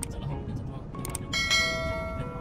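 Subscribe-button sound effect: mouse clicks, then a bright bell ding about a second and a half in that rings on, over low car road noise.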